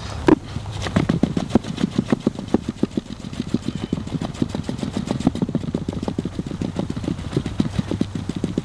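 A tick press board is set down with one sharp knock onto leaf litter in a test arena, then patted and pressed by hand in a rapid run of soft thumps, several a second, over a steady low hum.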